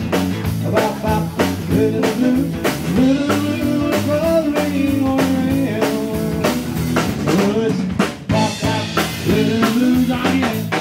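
A live band plays an instrumental stretch of a rockabilly song: a drum kit keeps a steady beat under electric bass, with a held melodic lead line in the middle of the passage.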